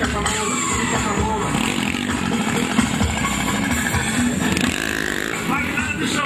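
Small motorcycle engines revving during stunt riding, mixed with loud music from a sound system and people's voices.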